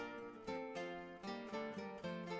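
Background music: a plucked-string instrumental in an early-music style, its notes struck one after another and left to ring out.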